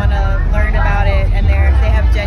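A woman talking, over a loud low rumble.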